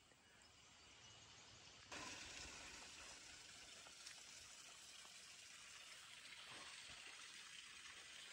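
Near silence: a faint, steady outdoor background hiss with no distinct events, stepping up slightly about two seconds in.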